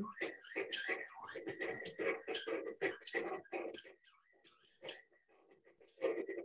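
Stand mixer kneading bread dough with its dough hook, the glass bowl shaking and knocking in an uneven rattle over the motor's faint hum, heard through video-call audio that cuts out about four seconds in.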